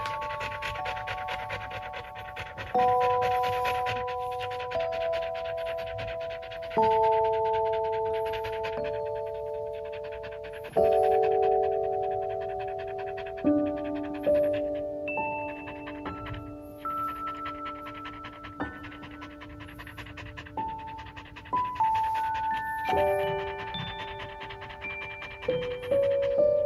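An Australian Shepherd panting quickly and steadily, over background music of held notes that change every few seconds.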